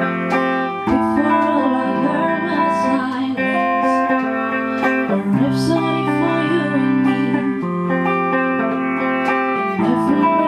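A small band playing a slow song on two electric guitars, with a woman singing the melody.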